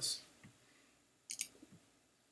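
Two quick, sharp computer mouse clicks in close succession, a double-click, about a second and a quarter in, in an otherwise quiet room.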